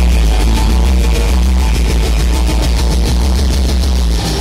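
Heavy rock band playing live through a concert PA, loud, with electric guitars over a heavy, steady bass, in an instrumental stretch without vocals, recorded from the crowd.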